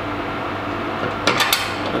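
A painted metal drip-tray holder is squeezed onto the edge of a wooden bar, giving a quick cluster of sharp clicks and knocks about a second and a quarter in. A steady background hum runs underneath.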